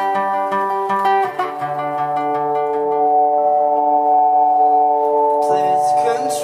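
Live band music: picked guitar notes over a chord, then the chord held and ringing on for a few seconds before fuller playing returns near the end.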